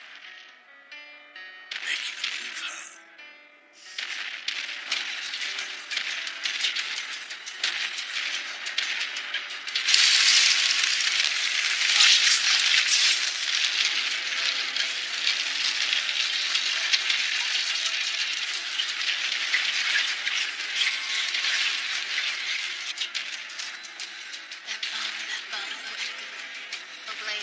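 Dramatic anime soundtrack music mixed with battle sound effects: a few short hits in the first seconds, then a dense crackling wash of sound that turns loud about ten seconds in and holds.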